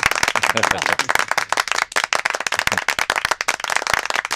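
A small group of people applauding: many hand claps overlapping in a dense, irregular patter.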